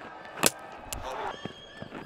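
A single sharp knock of a cricket ball being struck about half a second in, followed by faint crowd voices.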